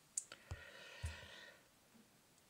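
A few faint, short clicks, some in the first half-second and one about a second in, with a soft hiss between them.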